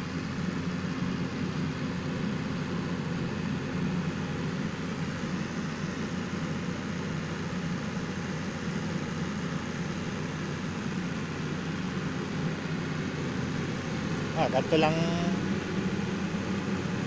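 Generator engine running steadily, a continuous low hum.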